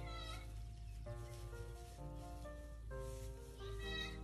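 Gentle background music of held keyboard notes, with a high cat meow falling in pitch right at the start and another near the end.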